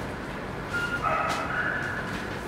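A dog whining in thin, high-pitched tones: a short whimper a little under a second in, then a longer wavering whine through the second half.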